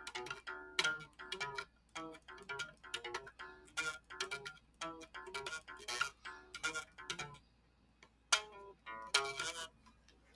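A guitar played alone: single picked notes and short phrases, each note plucked and left to ring, with a pause of about a second near the end.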